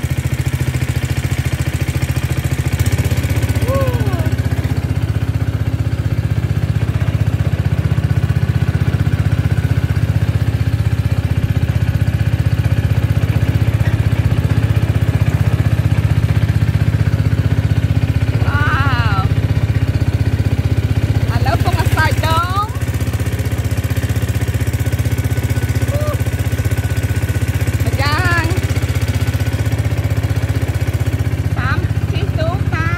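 Small boat-mounted engine running steadily, driving a water pump that sprays canal water through a nozzle with a rushing hiss.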